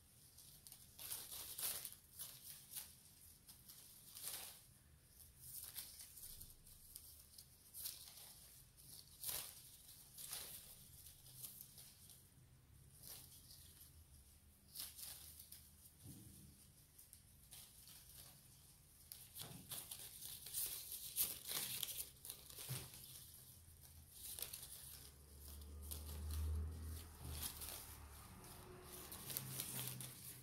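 Faint, irregular scratching and rustling of bonsai wire being wound around a branch by hand, the wire rubbing on bark and brushing the leaves.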